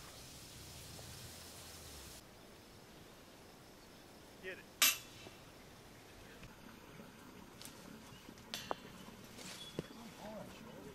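A flying disc striking a disc golf chain basket: one sharp metallic clank with brief ringing about halfway through, followed later by a few lighter knocks.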